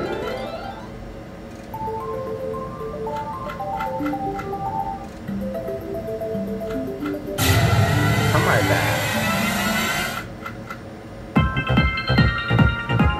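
Mystical Unicorn video slot machine game sounds as the reels spin: a plinking stepped melody of single notes plays while the reels turn, and a louder rushing spin sound comes in about seven seconds in. Near the end, bright chiming win tones ring out as a line of unicorns pays.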